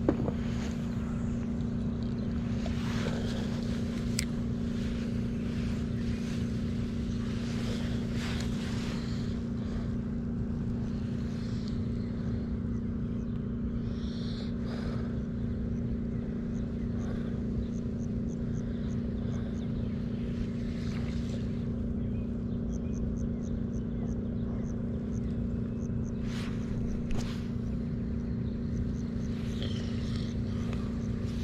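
A steady motor hum at a constant pitch, with faint scattered clicks and rustles and a few short runs of fast, faint ticking in the second half.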